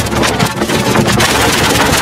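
Loud, harsh, digitally distorted noise from an effects-processed logo soundtrack, a dense steady rush with no clear tune.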